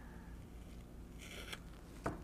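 Blue painter's tape being peeled off a wooden box, with a faint, brief rip about a second and a half in.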